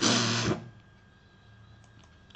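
A short breathy vocal sound from a man, a hissy exhale or hushed syllable lasting about half a second at the start, then quiet room tone.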